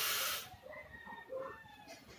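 Airy hiss of a hard draw through a rebuildable dripping atomizer fired on a mechanical tube mod, cutting off about half a second in, followed by a much softer breathy exhale of the vapour cloud.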